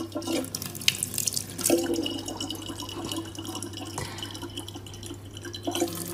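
A thin stream of water from a kitchen faucet runs into a plastic water bottle in a sink, with irregular splashes and drips as a cat's paw bats at the stream.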